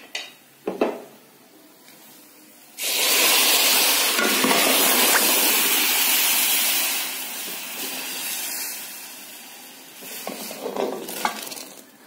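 Tadka of hot oil and fried garlic poured into cooked masoor dal: a sudden loud sizzle about three seconds in that dies away over several seconds. A few clicks of a utensil on the pot come before and after it.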